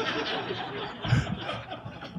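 An audience laughing and chuckling together, many voices overlapping, with the speaker laughing along; the laughter eases off toward the end.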